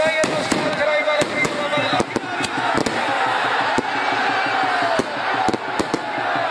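Firecrackers going off in a run of sharp, irregularly spaced cracks, a dozen or so, over a crowd shouting.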